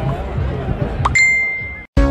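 Outdoor street crowd noise with voices, then a single bright bell-like ding about a second in. The ding rings as one steady tone until it cuts off abruptly just before the end.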